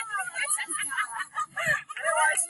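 High-pitched voices calling out in quick, rising and falling bursts, with a low thump about one and a half seconds in.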